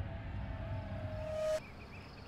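A single held tone that swells and then cuts off abruptly about a second and a half in, leaving faint outdoor ambience.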